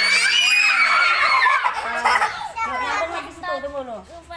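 A group of young children shrieking and shouting excitedly all at once, loudest over the first two seconds and then easing into ordinary chatter.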